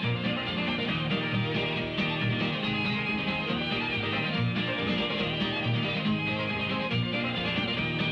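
Bluegrass string band playing live: acoustic guitar and banjo over a steady, regular bass-note rhythm, on an old recording that sounds dull in the highs.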